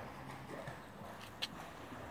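Footsteps of someone walking across paving and lawn, with a sharp click about one and a half seconds in, over a low steady hum.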